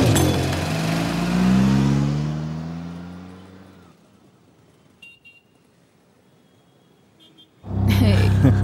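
A car passes close by, its engine note rising as it accelerates and then fading away over a few seconds, while the tail of the background music dies out. Then near silence with a couple of faint short high tones, until loud sound cuts back in just before the end.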